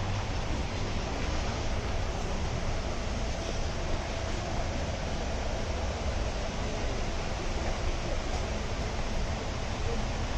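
Steady rushing background noise with a low hum underneath and no distinct events.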